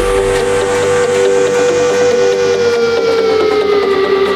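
Electronic trap music in a breakdown: the deep bass drops out at the start, leaving a held, siren-like synth tone that slides down in pitch over the last second or so.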